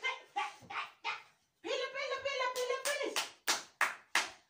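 A run of sharp hand claps at an uneven pace, cheering on a drinking race, with one drawn-out voice held for over a second in the middle.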